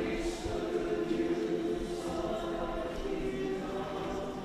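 A mixed church choir of men and women singing, holding long chords.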